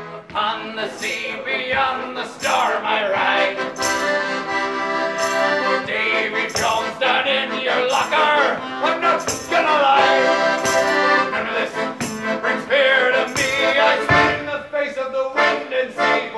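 A live song: singing over steady, sustained instrumental chords.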